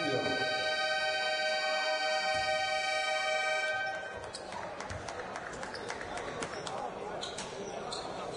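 Arena buzzer horn held as one steady tone for about four seconds, signalling the restart of play in a basketball game. It stops abruptly, and then come the noises of the court: a basketball bouncing on the hardwood floor amid a murmuring hall.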